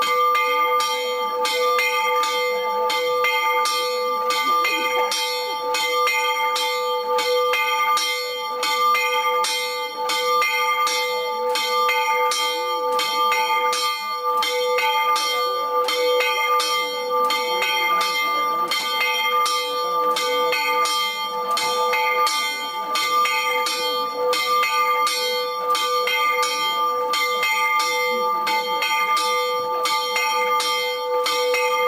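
Church bell in a stone belfry rung by a rope pulled from below, struck fast and evenly at about three strokes a second, its ringing tone sustained between the strokes.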